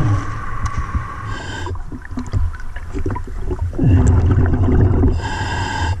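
A scuba diver breathing through a regulator underwater: whistling inhalations near the start and again near the end, with the low rumble of exhaled bubbles in between.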